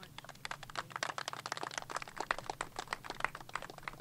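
Light, scattered applause from a small crowd: many quick, irregular handclaps.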